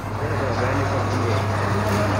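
Busy market ambience: indistinct voices over a steady low hum.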